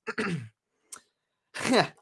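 A young man's voice: a short voiced sound at the start, then a falling "yeah" near the end, with a faint click between.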